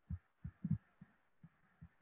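Faint, dull, low knocks of a stylus writing on a tablet screen, about six at uneven spacing as the strokes are made, the loudest just before the middle.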